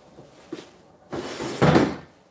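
Rustling and bumping of a handheld phone camera being picked up and repositioned, starting about a second in and loudest near the end.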